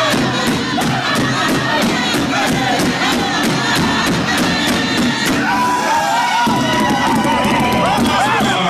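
Crowd cheering and whooping around a powwow big drum as a song ends, with high calls rising and falling over it. The drum is still being struck in quick, even beats.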